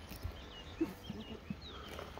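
Faint outdoor ambience with a few short, high bird chirps and a few soft knocks over a low steady rumble.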